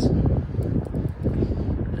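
Wind buffeting a handheld phone's microphone outdoors: an uneven, gusting low rumble.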